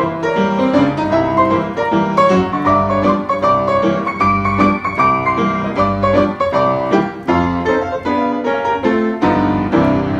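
Freshly tuned Hallet, Davis & Co UP121S studio upright piano, played with a steady stream of quick notes and chords across the keyboard.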